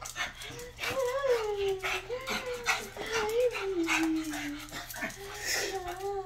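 Pug whining almost without a break, a high wavering whine that slides down in pitch twice, with short sharp clicks in between. It is an excited greeting whine from a dog that has missed its owner.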